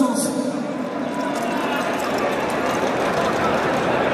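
Crowd of spectators in a bullring's stands: a steady murmur of many overlapping voices, with no single voice standing out.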